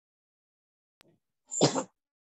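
A faint click about a second in, then a single short, loud sneeze near the end.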